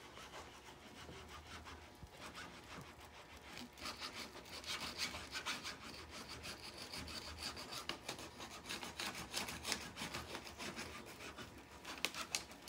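A handheld iron rubbed in repeated short strokes over polyester screen mesh along the edge of an adhesive-coated aluminium frame, bonding the mesh to the frame. The scraping grows louder from about four seconds in.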